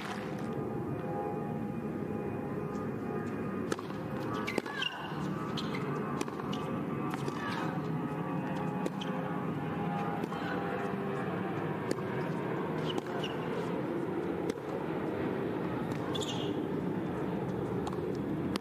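Tennis court ambience: a steady murmur of spectators, with a few sharp knocks of racket on ball from the rally on the hard court.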